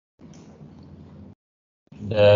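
Dead silence broken for about a second by faint microphone background hiss and low hum, which switches on and off abruptly.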